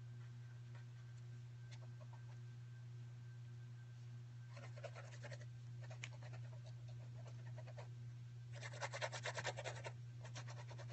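A paintbrush scrubbing quickly back and forth on paper: a short run of fast scratchy strokes about five seconds in, and a louder run of about a second near the end. A steady low electrical hum underneath.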